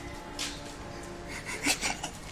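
Rubbing and scraping handling noise on a handheld phone's microphone, with a louder cluster of short scuffs about one and a half seconds in.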